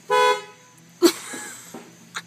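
Car horn giving one short toot, about a third of a second long, heard from inside the car. About a second later comes a sudden loud burst of another sound that fades quickly.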